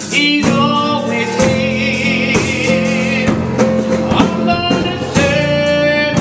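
A woman singing gospel into a handheld microphone, held notes wavering with a wide vibrato, over steady instrumental accompaniment with a regular beat.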